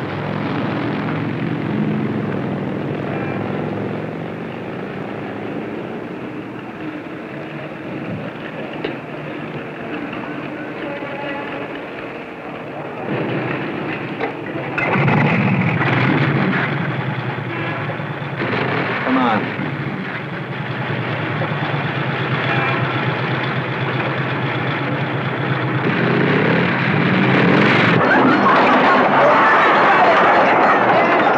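Motorcycle engines running steadily, with one revved up about halfway through, then growing louder near the end as the bikes ride off.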